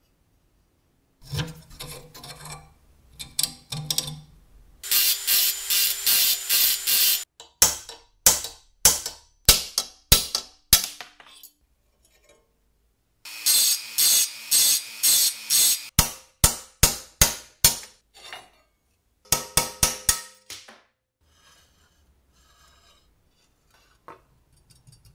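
Repeated sharp metal-on-metal strikes on a rusty steel circular-saw base plate, which the work treats as bent. They come in quick runs of ringing taps and in slower single blows about two a second, with short silent gaps between.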